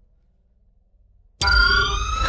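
Near silence with a faint low rumble, then about one and a half seconds in a loud electronic sci-fi sound effect starts suddenly: several whining tones rising in pitch together, a mechanical power-up.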